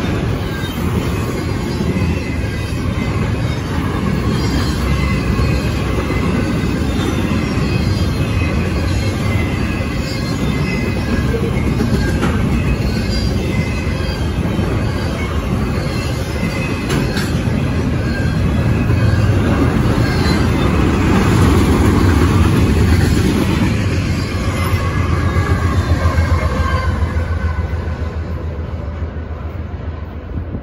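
Double-stack intermodal freight cars rolling past at close range: a steady, loud rumble of steel wheels on the rails, dropping away in the last couple of seconds.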